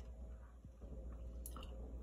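Faint chewing of small, tablet-like fruit-and-yogurt candies, with a few soft clicks about one and a half seconds in.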